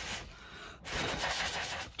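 A person blowing on a freshly alcohol-ink-stained metal button to dry the ink: a breath of air that ends just after the start, then a second, longer blow lasting about a second.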